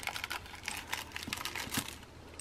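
Quick, irregular small clicks and rustling as a sunglasses case and its packaging are handled and opened.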